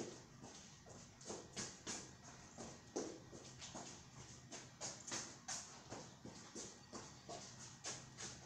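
Quick, light footsteps of sneakers on a padded gym mat during a small-step footwork drill, an uneven patter of soft taps about two to three a second.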